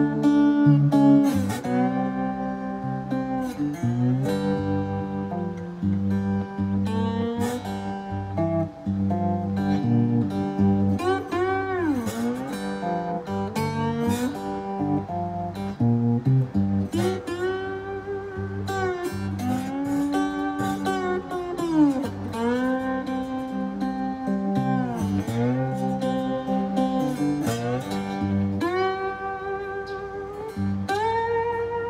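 Three-string cigar box guitar played with a glass bottleneck slide: a slow blues in G, plucked notes and chords, with the slide gliding up into and down out of notes several times.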